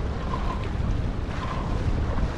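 Wind buffeting the microphone and water rushing past a sailboat's hull as it sails along, a steady rumble and hiss.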